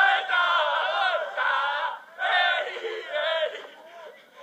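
A group of men chanting and singing together at full voice in long shouted phrases: a football celebration chant, with short breaks about two seconds in and near the end.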